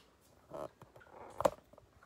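Light handling noises on a tabletop, with one sharp click about one and a half seconds in.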